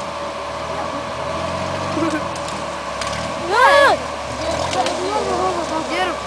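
Off-road trial jeep's engine running steadily under load as it crawls up a steep dirt slope. A man shouts loudly about halfway through, and fainter voices follow.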